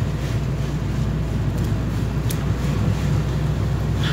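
Car engine and tyre noise heard from inside the cabin while driving: a steady low rumble, with a faint tick a little after two seconds in.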